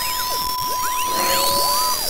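Electronic sound logo of synthesized sine tones sweeping up and down in repeated arches. Under them a steady beep like a broadcast test tone holds until just before the end, with a faint hiss.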